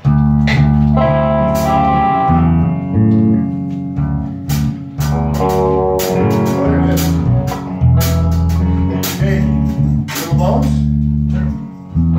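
A small band jamming: electric bass playing a line of low notes under a drum kit with frequent cymbal hits, and a higher melodic part on top. The playing starts together right at the beginning.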